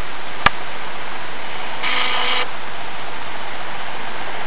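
A steady hiss of background noise with no clear source, broken by a single sharp click about half a second in and a brief faint pitched sound about two seconds in.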